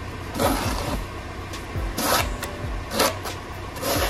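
Snow shovel scraping and scooping snow off a driveway in repeated strokes, about one a second.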